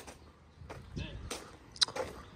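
Mostly quiet background with a brief spoken "yeah" about a second in, and a couple of short sharp clicks in the second half, the louder one near the end.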